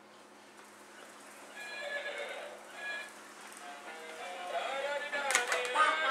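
Sound effect from a plush ride-on toy horse: a recorded horse whinny with a tune, starting about a second and a half in and getting louder in the second half.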